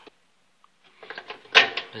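Near silence at first, then faint clicks from the plastic waveguide cover inside a microwave oven being handled and pressed into its snap-in latches, with a sharper click about one and a half seconds in.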